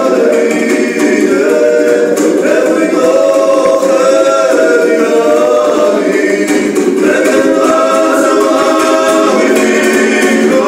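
Two men singing a Gurian folk song in harmony, their voices held together in long sustained lines, with a panduri strummed underneath.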